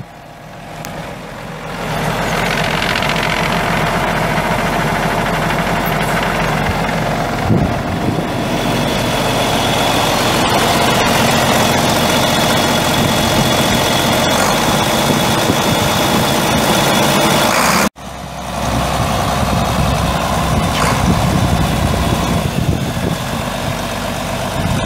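Case 1370 Agri-King tractor's 8.3-litre six-cylinder diesel engine running steadily. The sound breaks off for an instant about three-quarters of the way through and comes straight back.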